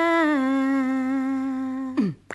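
A woman's unaccompanied voice holding one long note in the studio microphone; it steps down slightly in pitch about half a second in, then holds steady.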